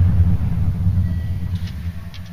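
A deep, low rumble that fades away steadily.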